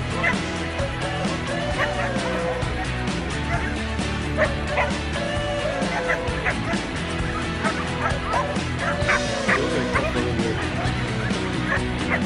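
A dog barking repeatedly in short, separate barks, with music playing underneath.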